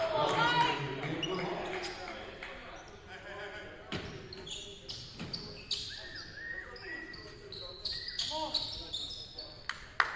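A basketball being dribbled on a hardwood gym floor, its bounces sounding as sharp repeated thuds. Short high squeaks come from players' sneakers, mixed with players' voices calling out.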